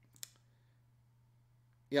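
One short, sharp click with a couple of fainter ticks right after it, then a quiet room until a man's voice comes in at the very end.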